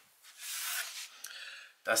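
Soft rubbing rustle of a hand brushing against the open subwoofer cabinet and its fibre damping wadding, lasting about a second and a half and fading out.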